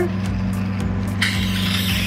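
Hydrafacial machine's vacuum extraction pen running on the skin: a steady motor hum with a pulsing undertone, and a hiss of suction from just past the middle.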